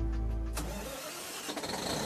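Large diesel generator set starting up: a burst of noise about half a second in, clicks about a second and a half in, then the engine catching and beginning to run up in pitch.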